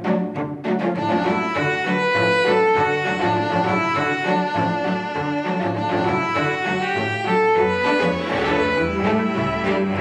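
A string quartet of violins and a cello playing a classical piece. It opens with short detached strokes in the first second, then moves into a flowing melody with held notes over a low cello line.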